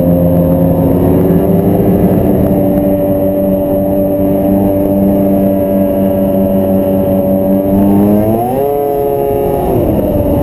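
Snowmobile engine running at a steady cruising speed, heard from on board the moving sled. About eight and a half seconds in its pitch climbs as the throttle opens, then drops back near the end.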